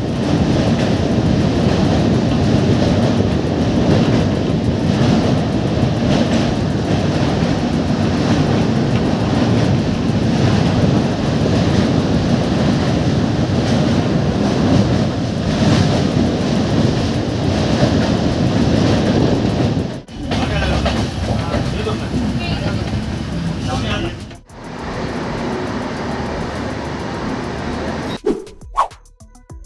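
A passenger train running over a steel truss bridge, heard from the open doorway: a loud, steady rumble and clatter of wheels on rail and girders. The sound breaks off abruptly about 20 seconds in and again about 24 seconds in, and runs on somewhat quieter near the end.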